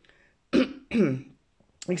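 A woman clearing her throat in two short coughs, about half a second and a second in.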